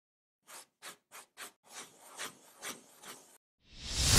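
Intro sound effects for an animated logo: four short scraping strokes, then a run of rasping swells about every half second, cutting off, and a loud whoosh rising near the end.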